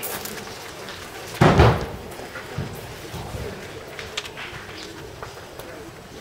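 A single heavy thud about a second and a half in, short and low, over a steady background.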